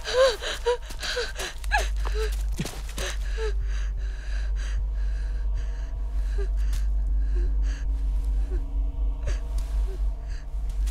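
A woman gasping and whimpering in fear: short, breathy cries for the first few seconds, then ragged gasps about once a second over a low, steady drone.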